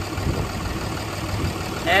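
Diesel truck engine idling steadily with the hood open, a low, even rumble.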